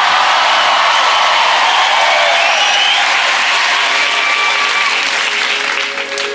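Studio audience applauding, a steady dense clapping that eases slightly near the end.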